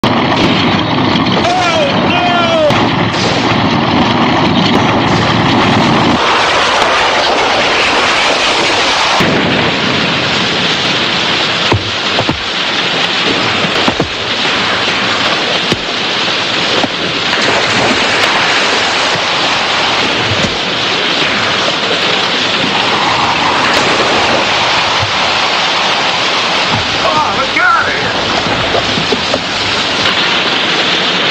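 Soundtrack of a film fistfight: a loud, continuous rushing din with scattered knocks and thuds, and brief shouts or yells near the start and near the end.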